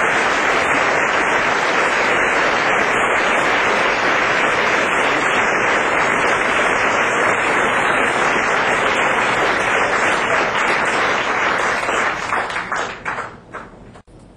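Club audience applauding a song's end: a dense, steady clapping that thins over the last two seconds into a few separate claps, then cuts off.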